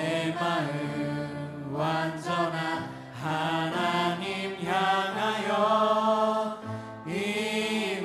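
A large choir of adults and children singing a slow Korean worship song in sustained phrases, with a short break between lines.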